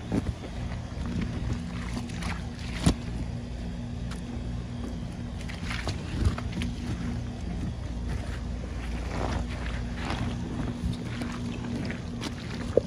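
Soapy water sloshing and splashing in a plastic pool, with irregular knocks and splashes, the sharpest about three and six seconds in, over a steady low hum.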